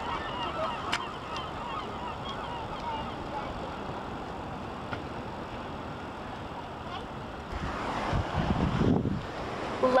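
Birds calling in a rapid flurry of short honking cries over a steady wash of surf and wind. The calls thin out after the first few seconds, and a louder rush of wind noise swells near the end.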